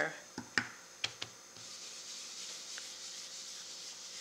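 Blending brush dabbed on cardstock: a few short taps, then from about a second and a half in, a soft steady rubbing as black ink is worked around an embossed image.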